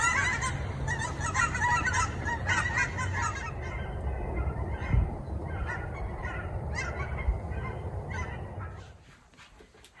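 A flock of geese flying overhead, honking over and over in a dense chorus. The calls thin out after a few seconds and stop about a second before the end.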